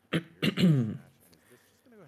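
A person coughs briefly and clears their throat, a short sharp burst followed by a voiced rasp of about half a second, all within the first second.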